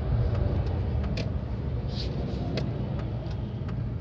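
Road traffic heard from inside a car waiting at a junction: a steady low rumble, with a heavy articulated tipper truck going by across the front at the start.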